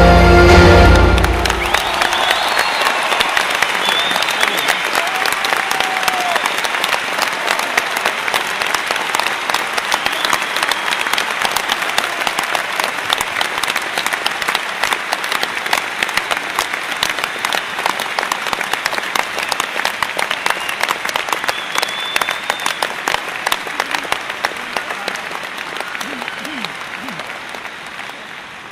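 The last chord of a grand piano rings out and stops about a second and a half in. A large concert audience then applauds, with a few shouts over the clapping. The applause slowly dies away toward the end.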